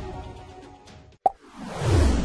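Background music fading out, then after a brief gap a single short pop about a second and a quarter in, followed by a swelling whoosh: the transition sound effect that opens a TV commercial-break bumper.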